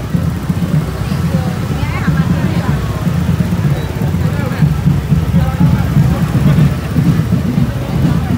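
Several motorbike and scooter engines running at low speed as they pass in a crowd, with people's voices chattering over them.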